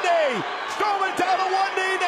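A man's voice yelling without words, in calls that slide down steeply in pitch, twice, over arena crowd noise.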